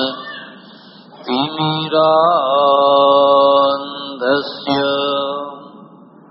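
A man's voice chanting a Sanskrit invocation in long, drawn-out held notes, gliding in pitch from one syllable to the next. There is a short break about a second in, and the chant trails off near the end.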